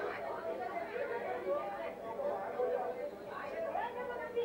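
Several voices talking over one another, from the soundtrack of a film of a village crowd played back over loudspeakers.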